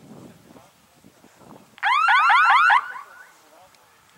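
Electronic signal of the F3B speed-course timing system: a loud run of about six quick rising whoops in under a second, trailing off, sounding on the flying field as a model passes a base.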